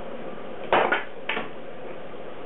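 Clatter of long thin sticks being knocked: a sharp double clack a little under a second in, then a lighter clack about half a second later.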